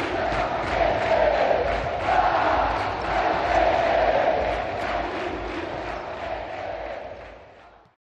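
Large crowd of basketball fans in an arena chanting together in surging waves over a steady low beat, fading out over the last couple of seconds.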